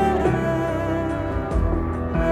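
Solo cello bowed live, sustained notes in a slow melodic line with a deep low register underneath.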